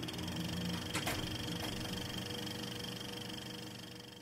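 Film projector sound effect: a steady mechanical whir that spins up with a short rising pitch, with two clicks about a second in, fading out near the end.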